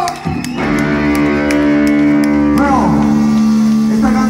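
Live rock band playing loudly: electric guitar sustains a long ringing chord over drum hits, with a short swooping pitch bend a little past the middle.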